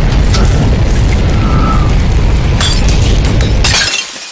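A loud, continuous low rumble with scattered crackles, cutting off abruptly just before the end.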